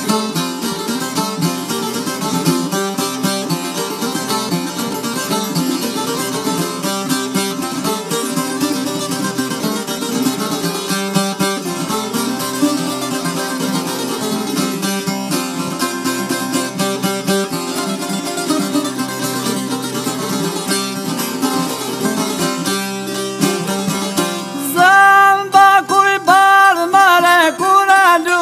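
Instrumental opening of an Albanian folk song played on plucked long-necked lutes (çifteli) with accompaniment; a singing voice comes in near the end.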